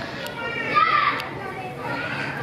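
Children's voices at play mixed with people talking, with a child's high-pitched call loudest around the middle.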